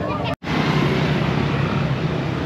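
Street traffic with motorbikes riding past: a steady low engine drone over road noise. It starts abruptly after a momentary dropout near the start.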